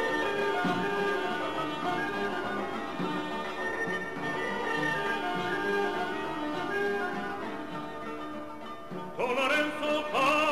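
Armenian folk instrumental ensemble, with qanun, lutes and wind instruments, playing a melody. About nine seconds in, a male solo voice comes in loudly with a wavering vibrato.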